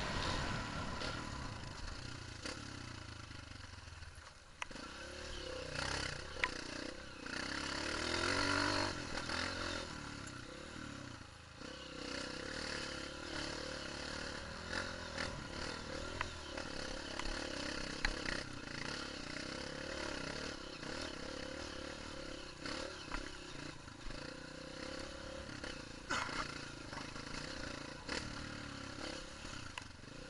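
A Honda CRF230 dirt bike's single-cylinder four-stroke engine runs under the rider's throttle, rising and easing off as it pulls up a rocky trail climb. Sharp knocks and rattles come from the bike over the rough ground.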